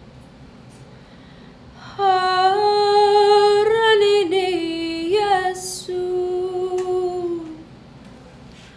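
A girl singing an Arabic hymn solo and unaccompanied into a handheld microphone. After a pause of about two seconds she sings one long line of held notes with small turns, taking a quick breath partway through, and the last note fades out near the end.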